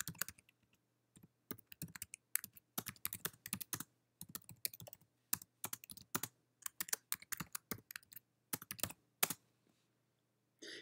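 Typing on a computer keyboard: quick, irregular runs of key clicks, with a brief pause about a second in.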